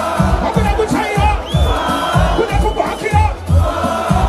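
Live dancehall performance through a PA: a steady kick-drum beat at about three strokes a second, a man singing into a microphone, and a crowd shouting along.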